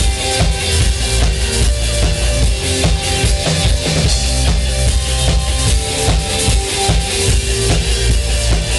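A band playing live: a steady drum-kit beat with bass drum and snare under electric guitar.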